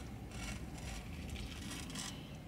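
A person chewing a bite of an al pastor taco: faint, irregular soft crackles over a low steady rumble.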